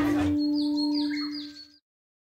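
Short bird-like chirps, several in quick succession with dropping pitch, over a steady held tone, fading out to silence near the end.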